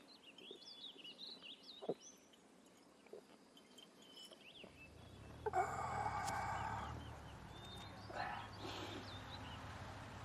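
Outdoor farmyard ambience: small birds chirping, and about five and a half seconds in a louder call of about a second and a half from a farmyard fowl, then more chirps.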